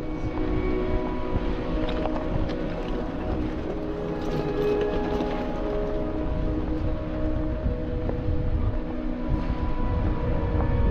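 Jeep Wrangler driving slowly over a rough gravel off-road trail: a steady low engine and drivetrain rumble with tyre noise, holding an even note throughout.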